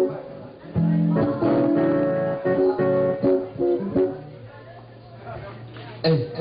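Live guitar music: plucked notes and strums, starting about a second in and growing quieter toward the end.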